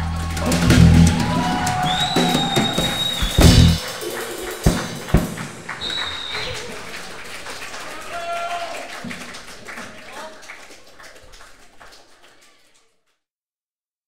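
The band's closing chord rings out and ends on a final drum hit, followed by audience applause with whistles and shouts that fades out to silence near the end.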